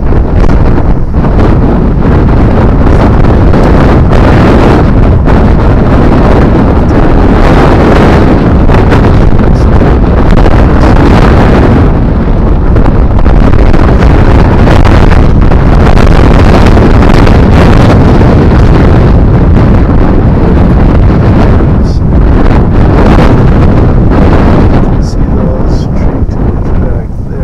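Loud, continuous wind buffeting on the microphone: an unbroken rumbling rush with most of its weight in the low end.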